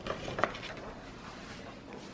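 Quiet room noise with a couple of light taps, the loudest about half a second in, from items being set down on a breakfast tray.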